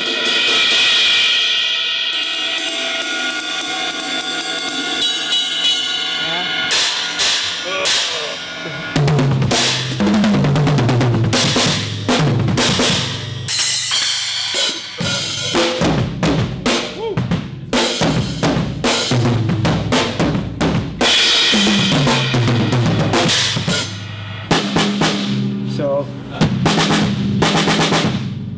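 A DW drum kit with Sabian cymbals being played: a cymbal is struck and left ringing for several seconds, then bass drum, snare and cymbal hits with fast fills that run down the toms from high to low, several times over.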